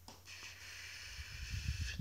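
A long breath drawn in, heard as a faint hiss lasting almost two seconds, with a couple of faint clicks at the start and low handling bumps toward the end.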